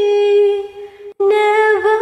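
A single voice singing a long wordless held note, unaccompanied, in a devotional nasheed. The note fades out about half a second in and breaks off, then the voice comes back in with a wavering note near the end.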